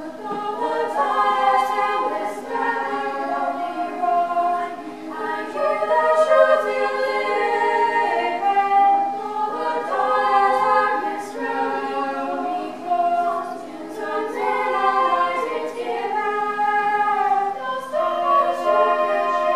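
A treble choir of girls' voices singing together in parts, unaccompanied.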